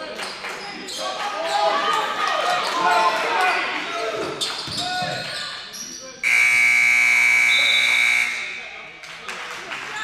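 Gym scoreboard buzzer sounding once, a steady tone of about two seconds that starts a little over six seconds in: the game clock has run out, ending the period. Before it, players' and spectators' voices and ball bounces on the court.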